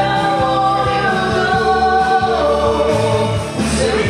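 A woman and a man singing a karaoke duet through microphones over a recorded backing track, with long held notes.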